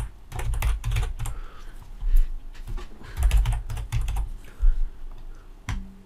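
Typing on a computer keyboard: a run of irregular keystrokes with dull thuds as a word is entered, then a single sharper click near the end.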